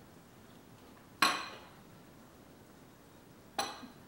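A metal fork clinks against a ceramic plate twice, about a second in and again near the end; each strike rings briefly, the first louder.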